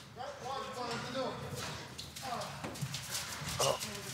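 Bobsleigh crew talking among themselves in the outrun, voices faint and broken, with knocking footsteps of their spiked shoes on the ice.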